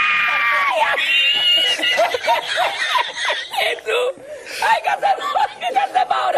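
A man laughing hysterically: long high-pitched squealing laughs in the first two seconds, then choppy cackling broken up with bits of speech.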